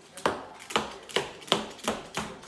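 Moluccan cockatoo rapping its beak on a granite countertop: five sharp knocks about half a second apart, coming a little faster toward the end.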